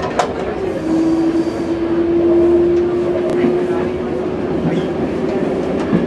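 VR Dm7 'Lättähattu' diesel railbus running along the track, a steady rumble of engine and wheels on rail. A single steady tone joins it about a second in and holds until near the end.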